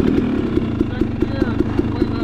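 KTM 300 XC-W TPI single-cylinder two-stroke dirt bike engine running at low revs, with a regular pulsing beat about five times a second.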